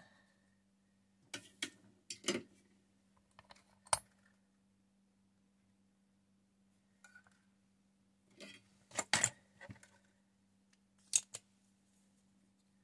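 Tools and plastic instrument-cluster parts being handled and set down on a towel-covered table: several short bunches of clicks and clatters, loudest about nine and eleven seconds in, over a faint steady hum.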